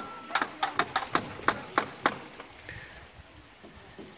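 A quick, irregular series of sharp taps, about ten in the first two seconds, then quieter background.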